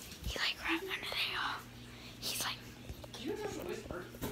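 A boy whispering in short breathy bursts, with a brief murmur in a low voice near the end.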